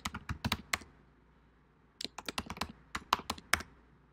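Computer keyboard typing in two quick runs of keystrokes, the first in the opening second and the second starting about two seconds in, with a short pause between.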